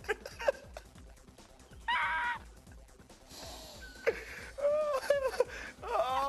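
Men laughing uncontrollably: a short, shrill held note about two seconds in, then bursts of high-pitched laughter building near the end.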